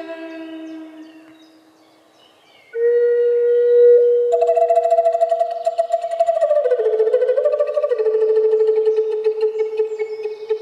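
Wooden Native American style flute playing a slow melody. A held note fades out in the first second. After a short pause a new long note starts at about three seconds in. A higher tone with a fast flutter joins it, and the melody steps down about two-thirds of the way through.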